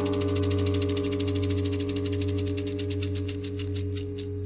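Synthesized drone: a steady low chord held under a rapid high pulsing that gradually slows and thins out near the end.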